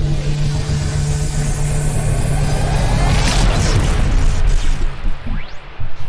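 Cinematic logo-reveal intro sound effects: a loud, steady low rumble under a bright hiss, a rising whoosh about three seconds in, then a few short swooshes and hits near the end.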